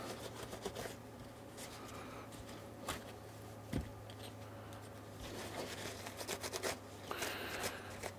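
Faint rustling and rubbing of a paper towel against a soldered circuit board as it is wiped to lift off flux, with a few light taps; the rustling grows busier over the last few seconds. A faint steady low hum runs underneath.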